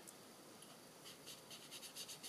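Faint, quick scratchy strokes of a foam sponge dauber rubbed over cardstock, about seven a second, starting about halfway through: ink being blended onto the card.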